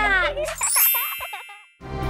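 The closing notes of a children's intro jingle: sliding, falling tones and a bright chime-like ding that ring out and fade to silence. A new tune starts just before the end.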